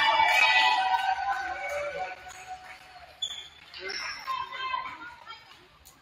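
Players and spectators shouting and cheering in a gymnasium during a volleyball rally, loudest for the first two seconds and then dying down to chatter. A few sharp ball or floor knocks and short high squeaks come in the quieter second half.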